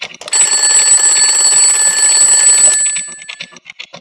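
Twin-bell alarm clock ringing loudly just after the start, holding for about two and a half seconds, then dying away, with quick ticking coming back as the ring fades.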